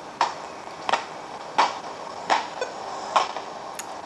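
A basketball being dribbled, five even bounces about two thirds of a second apart, heard through the baby monitor's speaker from its outdoor camera.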